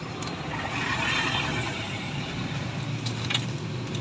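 Vehicle road noise on a wet street: a steady rushing hiss over a low hum, swelling about a second in and easing off again.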